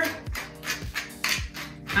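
Wooden pepper mill grinding peppercorns in several short bursts, over background music with a steady beat.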